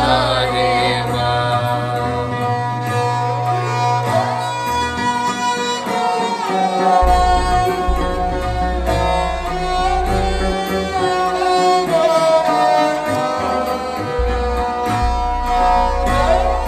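Raag Gauri Cheti played on Sikh string instruments, led by a bowed taus and a bowed saranda. Sustained melodic lines slide between notes over a low drone.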